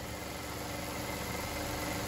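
Steady mechanical hum of pond filtration machinery running, with a few faint steady tones in it.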